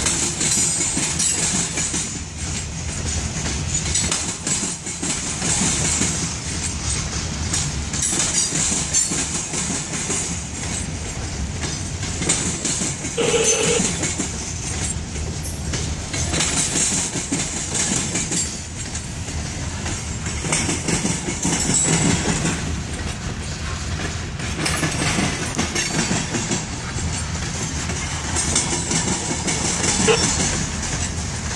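Covered hopper cars of a passing Norfolk Southern freight train rolling by: a steady rumble of steel wheels on the rails, broken by irregular clicks and knocks.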